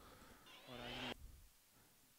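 Near silence, broken about half a second in by a brief, faint, steady-pitched voice sound lasting about half a second, like a short hum.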